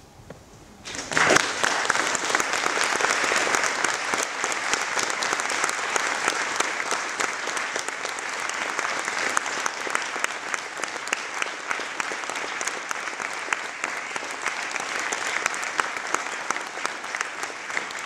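An audience applauding: many hands clapping together, starting suddenly about a second in and holding steady.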